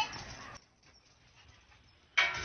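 The end of a cat's meow right at the start, trailing off into faint noise. From about half a second in there is near silence.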